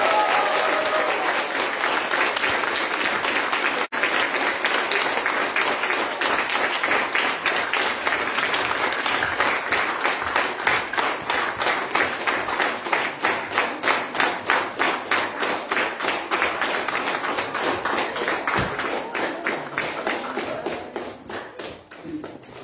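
Audience applauding: a dense ovation that settles into rhythmic clapping in unison about halfway through, then dies away near the end.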